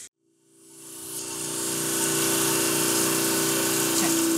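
Motor-driven grinding wheel running as a speckled trout otolith is ground down to a flat surface. It fades in over the first two seconds, then holds a steady hum with an even hiss.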